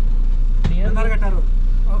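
Airport bus's engine idling while parked, heard from inside the cabin as a steady deep rumble. A voice speaks briefly about halfway through.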